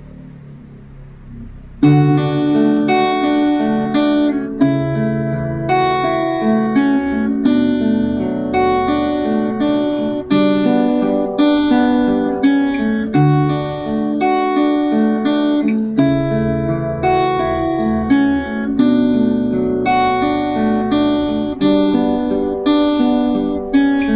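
Acoustic guitar with a capo on the second fret, fingerpicked: a song intro played as a steady run of plucked bass and treble notes, several at once, starting about two seconds in.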